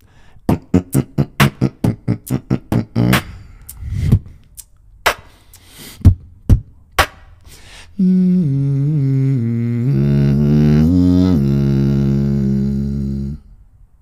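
Beatboxing into a close-held microphone. It opens with a fast, even run of percussive mouth sounds, about four a second, for some three seconds, then a few separate sharp hits. From about eight seconds a sustained hummed bass tone wobbles in pitch and cuts off a little before the end.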